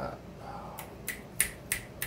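Trading cards being handled on a playmat: a quick run of four or five sharp snaps about a third of a second apart, the loudest near the middle.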